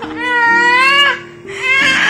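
A six-month-old baby crying out in protest: one long wail that rises and then falls, and a second beginning near the end. Background music with held notes plays under it.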